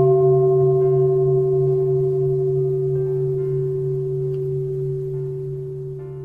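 A struck Buddhist bowl bell (singing bowl) ringing out, a few clear steady tones over a low wavering hum, slowly fading.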